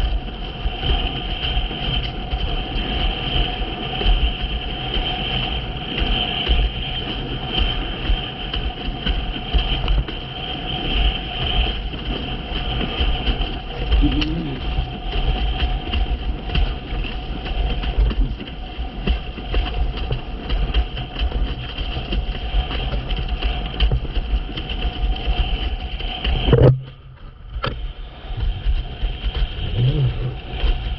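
Wind rushing over the microphone and water washing past a board moving fast across choppy sea, a steady rumbling noise with a steady high whine over it. Near the end the noise cuts out for about a second, then comes back.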